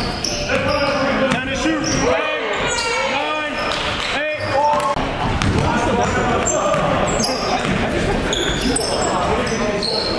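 Basketball being dribbled on a hardwood gym floor, with repeated bounces, while sneakers squeak in a cluster of short rising and falling squeals about two to five seconds in. Players' voices echo in the gymnasium.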